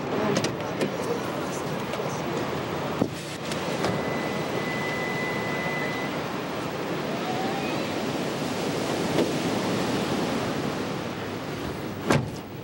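Steady seaside surf and wind, an even rushing noise of waves, with a brief drop about three seconds in.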